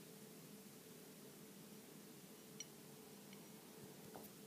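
Near silence: room tone with a faint steady hum and a single soft tick a little past halfway.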